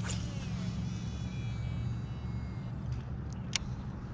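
Shimano Metanium DC baitcasting reel paying out line on a cast: a sharp click, then the spool's high whine under its digitally controlled brake, dropping in pitch and fading over about two and a half seconds. A second sharp click comes near the end.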